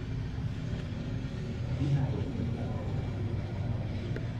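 Steady low rumble of indoor background noise with faint, indistinct voices.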